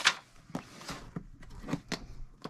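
A cardboard quilt-kit box being handled and worked open by hand: one sharp knock at the start, then a few light taps and scrapes.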